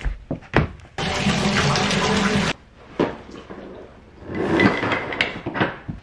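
Running water from a tap: a loud, even rush that starts about a second in and cuts off sharply about a second and a half later. A second rushing swell rises and fades near the end.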